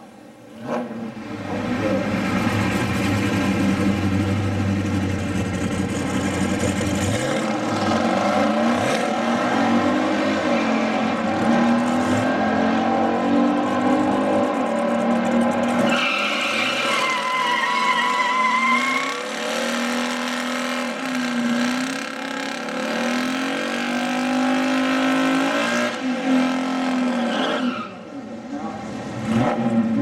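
Big-block V8 muscle-car engines at a drag strip: the 1970 Dodge Challenger's 440 Six Pack held at high revs through a burnout with tyre squeal. Partway through, engines idle and blip their throttles while staging, and near the end another burnout's revving starts up.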